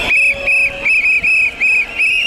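A whistle blown in a quick run of short, high blasts, about seven in two seconds.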